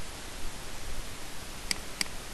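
Steady hiss of microphone background noise with no speech, broken by a single short click near the end, a computer mouse click.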